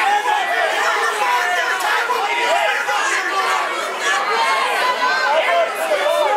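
Crowd of spectators shouting and talking over one another, many voices at once, steady throughout.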